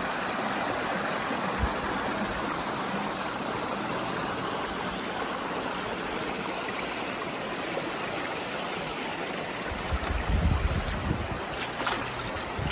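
Shallow river running over rocks and through small riffles: a steady rush of water. About ten seconds in, a second or so of louder low rumbling cuts in over it.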